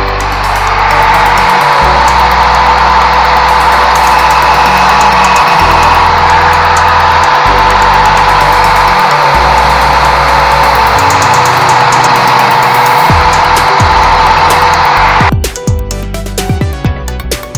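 Angle grinder with an abrasive disc grinding a metal part clamped in a vise: the motor spins up at the start, then a steady, loud grinding whine that stops abruptly about a second before the end. Electronic background music plays underneath.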